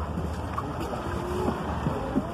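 A boat under way: the steady low drone of its motor, with faint voices in the background.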